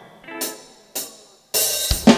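Two cymbal strikes from a drum kit about half a second apart, then a live cumbia band comes in loudly about one and a half seconds in: the opening of a song.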